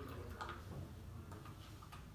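Quiet room tone with a low steady hum and a few faint, short clicks.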